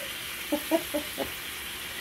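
Sauce of pasta water and oil sizzling in a frying pan, a steady hiss. A few brief voice sounds come about half a second to a second in.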